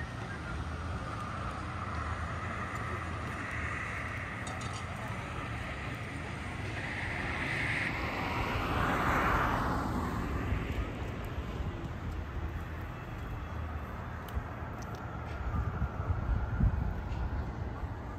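Outdoor town ambience picked up by a phone's microphone: a steady low traffic hum, with a vehicle passing that swells about eight seconds in and fades by eleven. Low thumps near the end.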